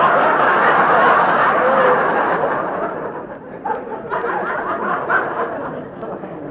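Studio audience laughing: a big laugh that slowly dies away, thinning to a few scattered laughs near the end, heard through the narrow sound of an old live radio broadcast recording.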